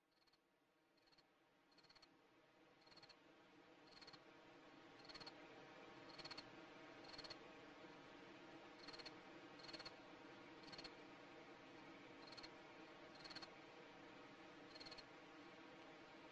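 Faint nature ambience fading in: short high chirps of small animals, roughly one a second at uneven spacing, over a steady hiss and a low hum.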